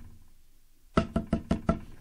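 Knocking at a pretend door: a quick run of about six sharp raps, starting about a second in.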